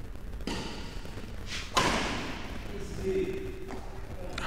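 Badminton racket striking the shuttlecock during a rally: a faint hit about half a second in, then a louder sharp smack a little under two seconds in that rings on in the echo of the hall.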